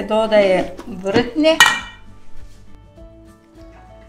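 Metal spoon scraping and clinking against a stainless steel bowl as fresh cheese is mashed, with one sharp clink about one and a half seconds in.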